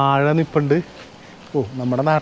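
A man's voice speaking in drawn-out, held vowels, with a short pause in the middle.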